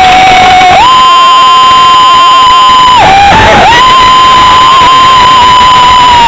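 A roller coaster rider screaming: a long, high, held scream, a brief break about three seconds in, then a second held scream. It is very loud, over the noise of the running train.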